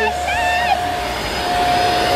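ZURU Bunch O Balloons electric party pump running, blowing air into stems of self-sealing balloons with a steady whine and rush of air.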